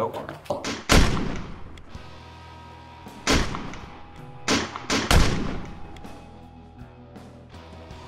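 Gunshots in a gunfight: one about a second in, then three more in quick succession between about three and five seconds in, each trailing off with a ringing tail. A steady music tone sounds beneath them.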